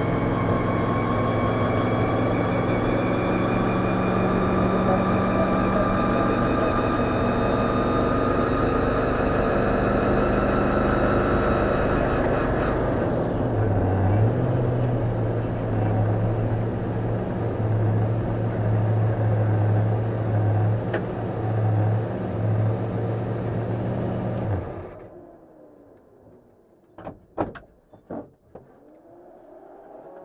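SIN R1 GT4 race car's V8 heard from inside the cockpit, its revs slowly falling as the car slows, then running low and steady for about ten seconds. The engine cuts off suddenly about 25 seconds in, and a few sharp knocks follow.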